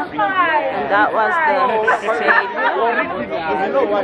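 Several people talking at once: loud, overlapping chatter of voices.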